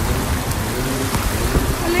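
Heavy storm rain pouring steadily, with a low rumble underneath.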